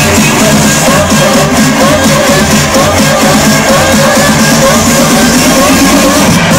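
Loud techno-style electronic dance music over a festival sound system, heard from within the crowd: a steady pounding beat under a repeating figure of short rising synth notes.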